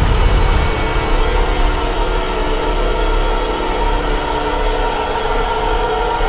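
Trailer score holding a loud dissonant drone under the title card: a dense cluster of held tones over a deep rumble, steady in level.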